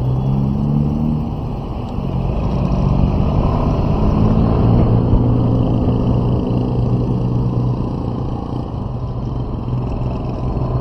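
A vehicle engine runs through traffic, its pitch rising about two to five seconds in as it speeds up and then easing off, over a steady low rumble of road and wind noise.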